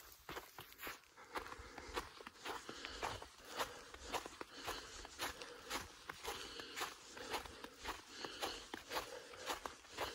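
A hiker's footsteps on a snow-covered trail, soft and steady at a walking pace of about two to three steps a second.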